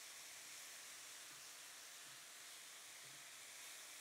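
Very faint, steady sizzle of sliced leeks, scallions and onions sautéing in olive oil in a wok.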